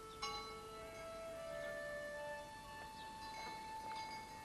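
Bells chiming: a few irregular strikes, the clearest just after the start, each ringing on in long, steady tones.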